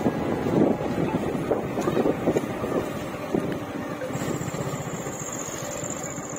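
Motorcycle engine running steadily as the bike rides along, with a dense low rumble.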